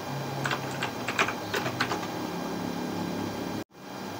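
Typing on a computer keyboard: a quick run of keystrokes in the first two seconds, over a low steady hum.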